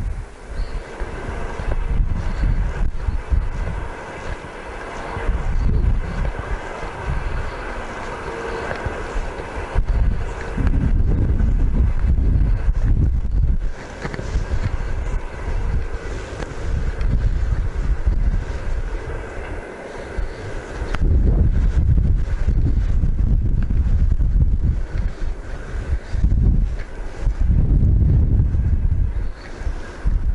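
Wind buffeting a body-worn camera's microphone in gusts: a deep rumble that swells and drops unevenly, heaviest in the last third.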